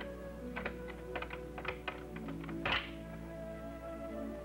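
Soft background music, over which a wooden door's latch and lock give a series of irregular clicks and rattles, with a louder thunk near three seconds in, as the door is shut and locked.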